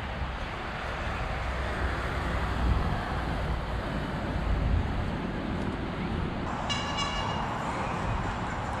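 Steady road traffic noise with a low rumble of wind on the microphone. About six and a half seconds in, a brief high-pitched tone with many overtones sounds for about a second.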